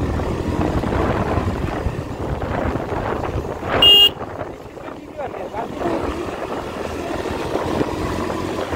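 A vehicle's engine and road noise as it drives along, a steady low rumble, with one short horn beep about four seconds in.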